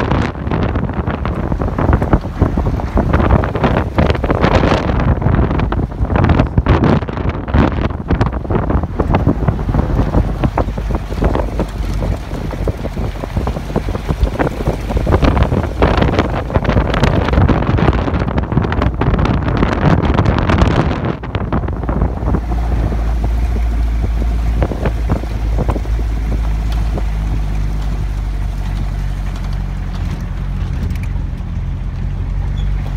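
Wind buffeting the microphone over the rumble of a vehicle on a rough gravel road. About two-thirds of the way through the buffeting eases, leaving a steady low engine drone.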